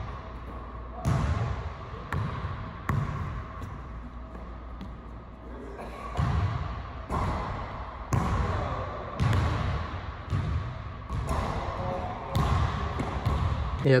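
Basketball bouncing on an indoor court, roughly one bounce a second, with a short pause a few seconds in.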